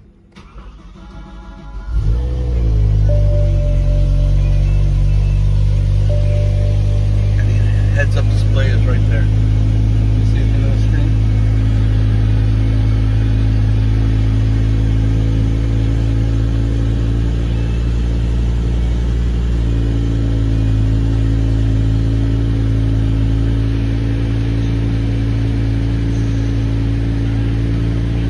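BMW M6's 5.0-litre V10 cold start: the starter cranks for about a second and a half, then the engine catches at about two seconds with a brief rev flare. It settles into a loud, steady idle.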